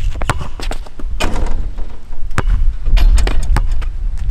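A basketball striking the hoop, then bouncing again and again on an asphalt court as it is dribbled: a run of sharp, irregular knocks over a steady low rumble.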